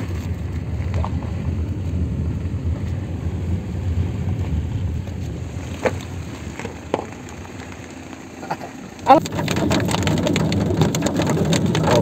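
Car engine idling, heard from inside the cabin as a low steady rumble with a few faint knocks. About nine seconds in it switches abruptly to louder driving noise, with raindrops tapping on the windshield.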